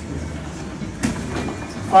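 Low, steady rumble of a training hall with faint shuffling on the mats, and one sharp slap or thump about a second in.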